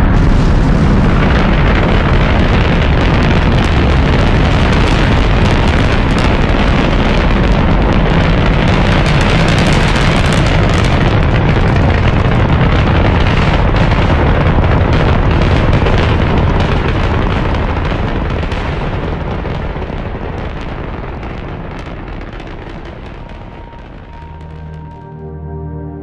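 Saturn V rocket engines at liftoff: a loud, deep, continuous rumble that swells in at the start, holds steady, then slowly fades over the last several seconds.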